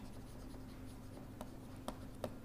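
Faint scratching of a stylus writing on a tablet, with two light taps in the second half, over a steady low hum.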